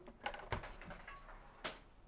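Faint handling noise of a long coaxial cable being picked up, with two small clicks about half a second and a second and a half in.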